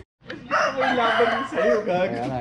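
A rooster crowing: one harsh, wavering call starting about half a second in and lasting to the end.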